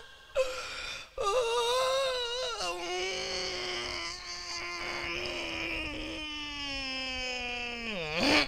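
A performer's drawn-out comic wailing cry, a mock lament. A short wavering wail is followed by one long held note that slowly sinks in pitch and breaks off near the end.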